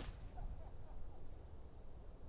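The fading tail of a 3-wood striking a golf ball at the very start, then only a faint low background rumble.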